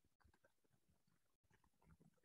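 Near silence: room tone between the lecturer's remarks.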